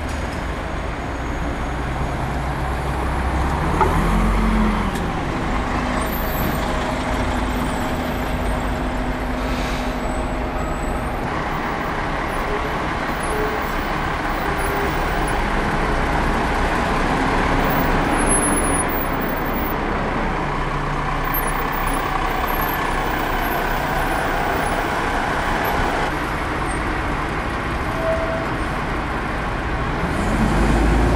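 Diesel double-decker buses running and moving off along a street one after another, their engine note rising and falling as they go by. The loudest moment comes about four seconds in.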